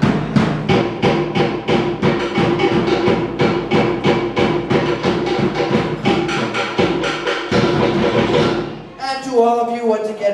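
Live Tahitian ʻōteʻa drumming: rapid, evenly spaced strikes on wooden slit drums (toʻere) over a deeper drum, stopping shortly before the end. A man's voice starts speaking right after the drums stop.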